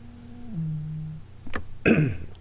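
A man's drawn-out hesitation hum, stepping down in pitch about half a second in and stopping after about a second, then a throat clearing near the end.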